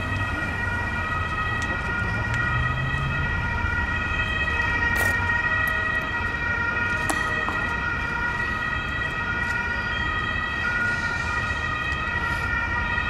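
Ambulance siren sounding steadily throughout, over a low rumble.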